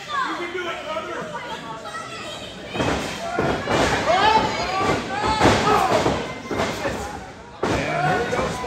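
Heavy thuds of wrestlers' bodies hitting the ring, one about three seconds in and another near the end, amid people shouting in a large hall.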